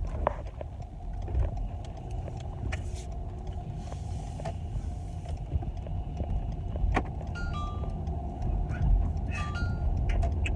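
Car interior road noise: a steady low rumble of engine and tyres while driving, heard inside the cabin, with a few soft clicks and some short high beeps near the end.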